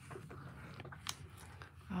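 Faint rustling and scuffing of hands pressing and rubbing cardstock down onto an inked rubber background stamp in a Stamparatus, with a couple of light clicks about a second in.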